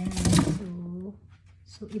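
Speech only: a person's voice with two drawn-out syllables, a short pause, then words again near the end.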